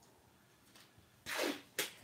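Blue painter's tape being pulled off its roll and torn: a short ripping noise about a second and a quarter in, followed by a briefer second rip.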